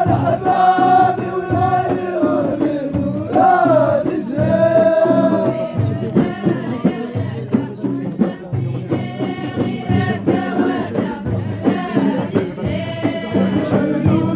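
Ahidous: a chorus of Amazigh (Berber) singers chanting together in long held notes that break off and start again every few seconds, over a low repeating beat.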